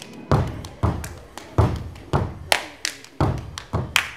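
Body percussion in a steady rhythm, starting about a third of a second in: low thumps with a few sharper hand claps among them, about two to three strikes a second.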